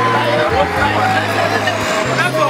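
Several women wailing and crying aloud in mourning, their voices overlapping and wavering, over a low steady drone.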